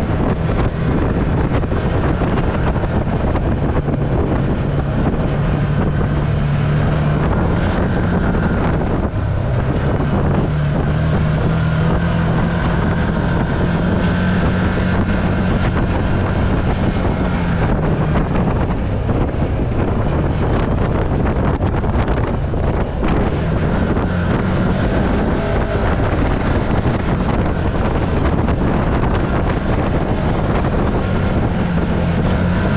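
Can-Am Maverick side-by-side engine running under way, its pitch rising and falling with the throttle, over steady wind noise on the microphone.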